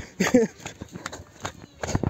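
Footsteps of a person walking in leather sandals over a rocky dirt path: irregular scuffs and slaps, the heaviest step near the end. A short voiced sound comes early on.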